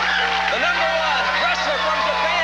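Studio audience cheering and shouting, many voices yelling over one another, with a steady low hum underneath.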